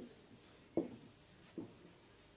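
Marker writing on a whiteboard, faint, with two brief louder sounds a little under a second apart.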